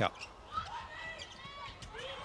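Volleyball rally sounds on an indoor court: sharp hits of the ball and players' shoes squeaking on the floor, over a low arena crowd murmur.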